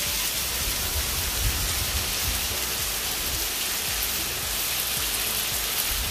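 Rain falling steadily onto a wet paved driveway, an even unbroken patter with no let-up.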